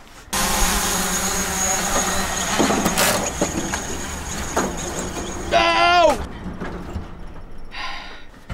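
Wind and road noise from the bed of a moving pickup truck, starting abruptly and running for about five seconds with a steady high whine over it. A short drawn-out vocal exclamation follows near the six-second mark.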